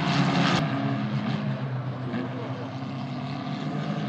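Formula 4 single-seater race cars, Abarth 1.4-litre turbocharged four-cylinder engines, running at speed as a pack, a steady engine drone with several held engine notes. The sound changes abruptly about half a second in, losing its lowest part.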